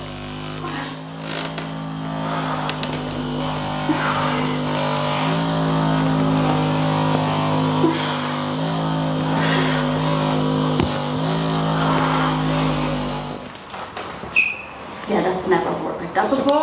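Handheld percussion massage gun running against the back of the thigh: a steady motor hum whose pitch shifts slightly a few times, stopping about thirteen seconds in.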